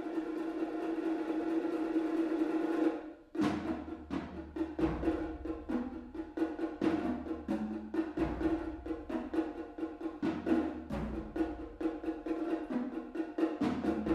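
Live percussion duo on congas and other hand drums: a steady held tone for about the first three seconds, then quick rhythmic drum strikes over it, with deep low notes coming in at intervals.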